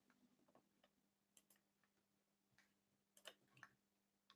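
Near silence with a few faint, sharp clicks, the two clearest near the end, over a faint steady hum.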